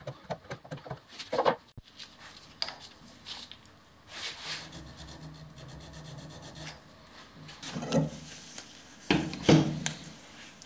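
Hand scraper cutting the cast-iron headstock casting of a 7x12 mini-lathe, relieving its centre section: quick rasping strokes at first, then slower rubbing metal-on-metal, with a few louder strokes near the end.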